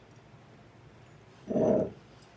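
A dog vocalizing once, short and loud, about one and a half seconds in.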